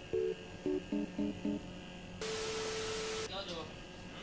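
A short intro jingle from a compilation video: a quick run of brief pitched notes, some sounding together as chords. About two seconds in it gives way to a second-long burst of hiss over one steady tone, and a voice starts near the end.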